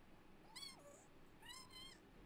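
Two short, faint high-pitched cries: the first, about half a second in, rises and then falls, and the second, near the end, is held level.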